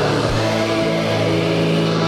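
Atmospheric black metal: a dense wall of distorted guitar holding sustained chords, shifting to a new chord about a third of a second in.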